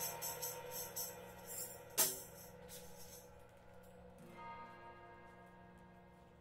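Improvised rock jam on guitar, bass and drums winding down: one sharp percussion hit about two seconds in, then sustained notes ring and fade away.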